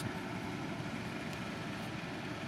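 Steady background noise: an even hiss with a faint hum and no distinct events.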